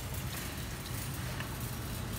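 Outdoor parking-lot ambience: a steady low hum under an even hiss, with distant vehicle noise.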